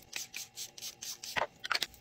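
Makeup setting spray being misted from a pump bottle in a quick run of short sprays, several a second.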